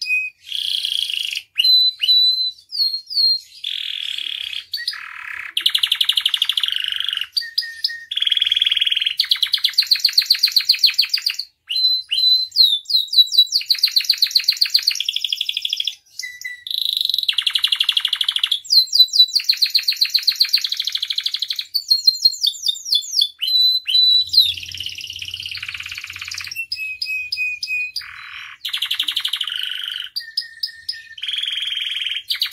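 Domestic canary singing a long, varied song of fast trills, rolls and repeated sweeping whistled notes, in phrases of one to two seconds broken by brief gaps.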